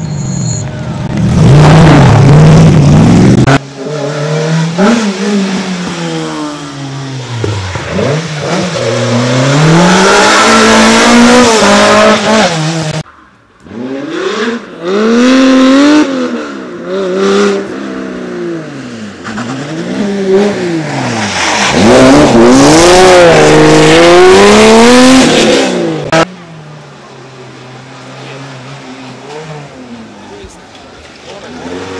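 Historic rally cars at full throttle through a stage, engines revving up and down in pitch through the gears as they pass. The loud passes break off abruptly several times, and a quieter stretch of engine sound follows near the end.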